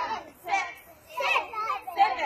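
Young children's high voices calling out and chattering in several short stretches, with brief gaps between.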